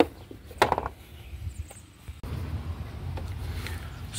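Handling noise of the Corolla's plastic engine cover being set down: a sharp knock at the start and a short clatter about half a second in. About two seconds in the sound changes suddenly to a steady low rumble.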